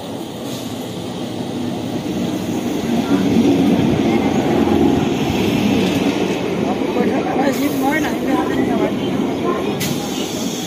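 A passenger train pulling in alongside the platform: a steady rumble of wheels on the rails that grows louder about three seconds in as the coaches draw level, then runs on as the train slows. People's voices are mixed in near the end.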